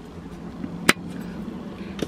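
A small plastic push-lid car trash bin being handled: a faint click at the start and one sharp click about a second in, over a steady low hum.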